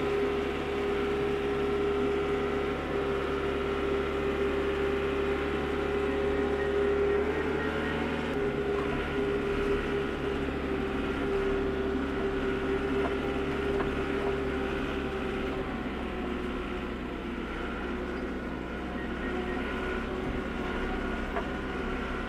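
A steady mechanical motor hum with a strong held tone over it. The tone eases off and fades out a little past the middle, leaving a lower, even hum.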